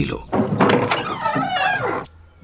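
A door being opened: a knock of the latch and then a long creak of the hinges, wavering in pitch for about a second and a half.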